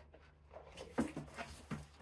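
Cardboard rustling and scraping as a boxed figure is lifted up out of a tall cardboard shipping carton, with a light knock about a second in and another near the end.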